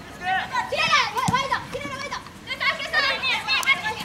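Women footballers shouting and calling to one another across the pitch, several high voices overlapping in short calls, with a single dull thump about a second in.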